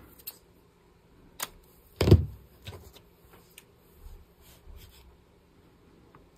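Large fabric scissors cutting lace and being put down on a cutting mat: a few light sharp clicks and one louder thump about two seconds in, with faint rustle of lace being handled.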